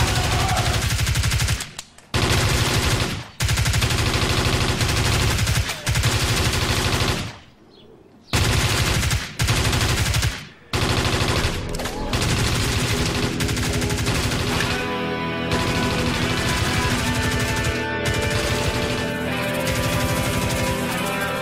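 Rapid automatic gunfire in long bursts, stopping suddenly several times, over the first twelve seconds or so; after that, film score music with sustained notes takes over.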